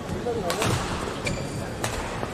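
Badminton racket strikes on a shuttlecock during a rally: sharp cracks about half a second in, a fainter one past the middle, and another just before the end, over the steady hum of an indoor arena.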